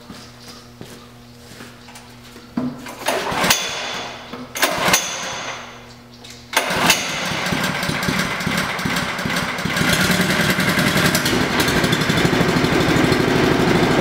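Small engine of a chemical mixer's transfer pump being started. After two short noises, it catches about six and a half seconds in and runs steadily, getting louder a few seconds later as it speeds up.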